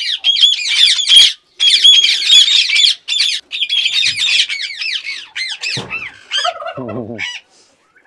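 Indian ringneck parakeets screeching in rapid, overlapping bursts of high, arching calls, with a brief lower voice-like sound about six seconds in.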